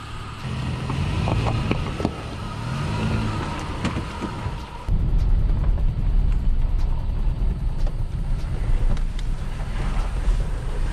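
Pickup truck engine running with a few sharp clicks, heard from outside beside the open door. About five seconds in this gives way to a louder, steady low rumble of the truck driving on a dirt road, heard from inside the cab.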